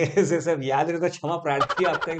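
Men laughing in a run of short voiced bursts.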